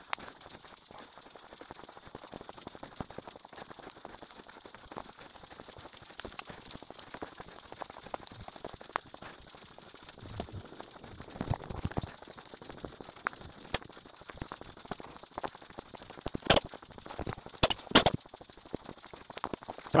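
Footsteps on a leaf-covered woodland path, sped up into a rapid, continuous patter of crunches and clicks, with a few louder knocks near the end.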